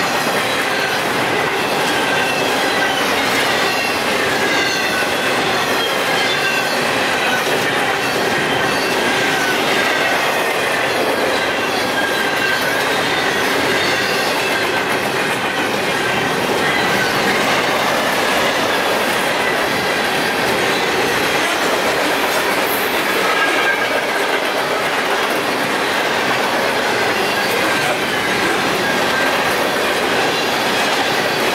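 Long freight train's intermodal cars rolling steadily past, steel wheels on rail, with a faint, wavering squeal from the wheels.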